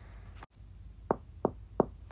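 Three quick, evenly spaced knocks on a door with the knuckles, about a third of a second apart.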